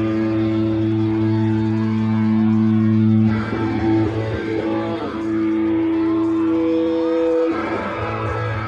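Live rock band starting a song: distorted electric guitar holding long chords over a low sustained bass note, changing chord about three seconds in and again near the end.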